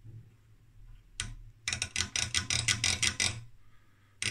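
Detented vertical-gain rotary switch on a Heathkit OS-2 tube oscilloscope clicking through its steps: one click, then a fast run of about eight clicks a second for nearly two seconds. It is being worked back and forth to clean its contacts, because the switch needs massaging.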